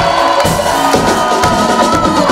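Live band music: a drum kit keeping the beat under electric guitar, bass and keyboards, with a long held note running through it.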